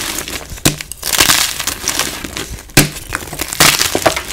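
Blocks of gym chalk crushed and crumbled by hand, gritty crunching with a few sharp snaps as pieces break off and fall onto the chalk below.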